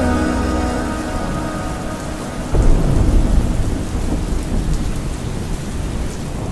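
Cinematic logo-reveal sound effect: a rushing, rain-like noise as the last notes of the music fade out, then a sudden deep boom about two and a half seconds in that rumbles and slowly dies away.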